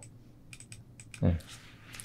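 A handful of light clicks from a computer keyboard in the first second, then a brief spoken 'ne'.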